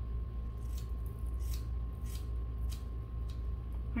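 Hair-cutting scissors snipping into the ends of a lock of hair, point cutting: a run of about eight small, crisp snips starting about half a second in, over a steady low hum.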